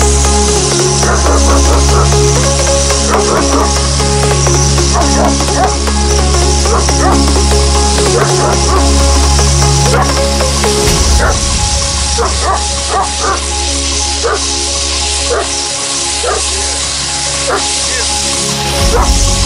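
Electronic music with a steady bass line, over a dog barking over and over at short intervals. A ground fountain firework hisses under them.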